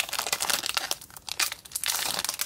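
Foil wrapper of a Disney Lorcana booster pack being torn open by hand and crinkled as it is pulled apart, a dense run of crackles throughout.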